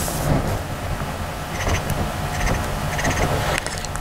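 Felt-tip marker drawing short strokes on construction paper, a few brief scratchy strokes in the second half, over a steady low hum.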